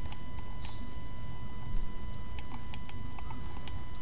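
Background noise of a home recording setup: a steady low hum with a thin electrical whine over it, and a few faint scattered clicks.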